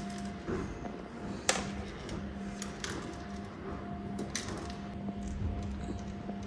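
Scattered light taps and clicks of a cat batting at a wand toy on a wooden floor, the sharpest about a second and a half in, over quiet background music.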